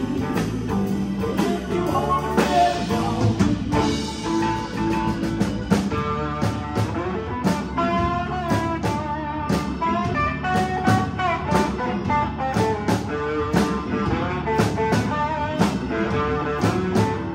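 Live band playing an instrumental passage on drum kit and electric guitar, the drums keeping a steady beat with cymbal hits.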